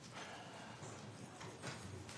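Faint footsteps of several people walking on a hard floor, a few irregular soft knocks over low room hum.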